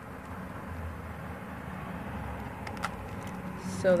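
Steady low background hum with a faint hiss, and a couple of faint clicks about three seconds in.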